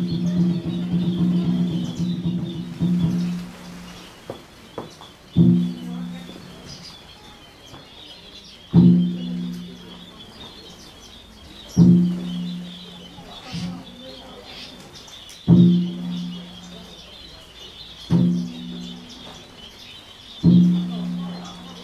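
A Buddhist bowl bell struck about every three seconds, five times, each stroke ringing low for about a second. An earlier held tone dies away about three seconds in, and steady high bird chirping runs underneath.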